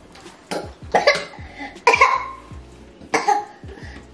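A young child coughing about four times in short, loud fits, choking a little after gulping a drink too fast.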